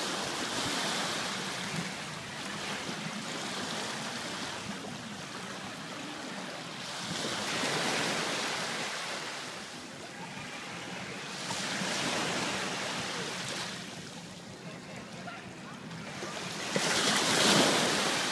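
Small waves breaking and washing up on a sandy shore, swelling and fading every few seconds. The loudest surge comes near the end as a foaming wave rushes in over the shallows.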